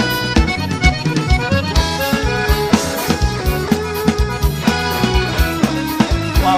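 Live forró band playing an instrumental passage: accordion melody in held notes over electric guitar, with a drum kit keeping a quick steady beat.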